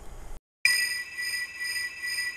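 Faint room tone breaks off into a moment of dead silence. Then outro music starts abruptly with a sustained, bright electronic chime tone.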